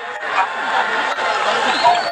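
Football stadium crowd: a dense, steady hubbub of many spectators' voices.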